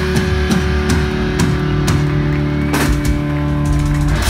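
Heavy metal band playing live: distorted electric guitars holding sustained chords over scattered drum and cymbal hits.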